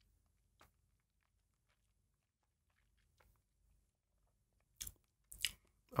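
Faint wet mouth and lip sounds of a taster working a sip of whisky around the mouth. Near the end come two short breaths.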